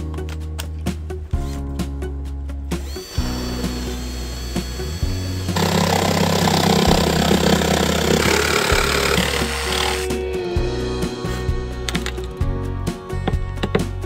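Bosch cordless jigsaw cutting through a wooden board for about four and a half seconds in the middle, the loudest sound here, shortly after a cordless drill runs briefly with a steady whine. Background music with a steady beat plays throughout.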